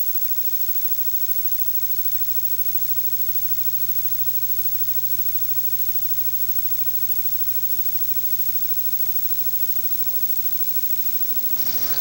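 A steady low electrical hum with a slight buzz to it, like mains hum, on an otherwise silent soundtrack. It holds at one level and stops shortly before the end.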